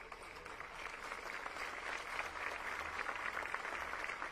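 Crowd applauding, swelling over the first second and then holding steady.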